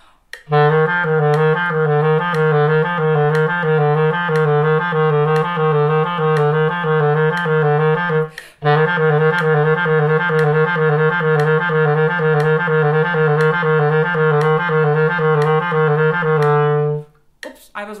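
Clarinet playing a fast low-register finger exercise, the notes E F G F repeated in double triplets, a drill for the little-finger keys, over a metronome's steady clicks. The playing breaks briefly for a breath about halfway through and stops about a second before the end.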